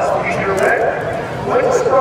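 A man talking; the words are not made out.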